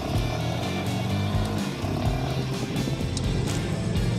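Royal Enfield Himalayan 450's single-cylinder engine running as the bike is ridden on a dirt track, over background music. It starts abruptly with a cut.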